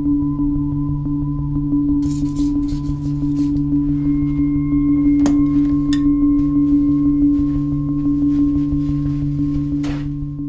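Ambient film-score drone: several low tones held steady, with scattered crackles and clicks joining in about two seconds in and a sharper click about halfway through.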